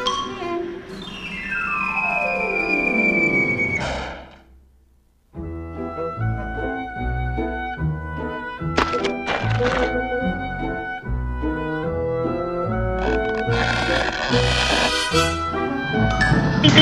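Cartoon orchestral score with sound effects: a long descending whistle-like glide for about three seconds fades out into a second of silence, then the orchestra comes back in abruptly with a steady bass and several sharp percussive hits.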